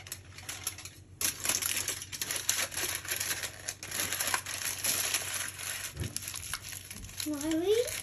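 Aluminium foil being folded and crumpled shut by hand, crinkling in a long run of crisp crackles from about a second in.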